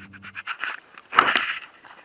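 A steady low hum cuts off about half a second in. Then come clicks and a short scraping rub just after a second in: handling noise of a small handheld camera held close to the face.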